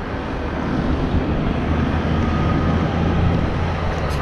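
Steady low engine rumble of road traffic with outdoor hiss, growing louder through the middle and easing a little near the end.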